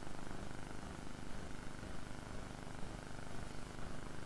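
Room tone of a lecture hall: a steady low hiss with a faint hum and no distinct events.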